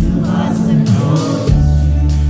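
Live pop song played by a band: a singer with acoustic guitar over a steady beat. A deep bass comes in about one and a half seconds in.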